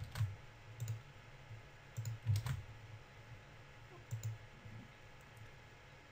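Scattered clicks of a computer mouse and keyboard on a desk, about seven in all, some in quick pairs, stopping after about four and a half seconds.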